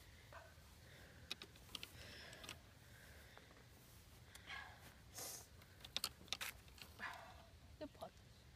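Quiet, scattered clicks and clinks of golf clubs being handled in a golf stand bag, a dozen or so light knocks spread irregularly over several seconds.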